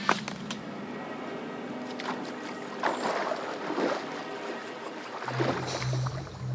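Water splashing in a swimming pool as a person swims, coming in irregular surges, after a sharp click at the start. Music with a pulsing bass comes in near the end.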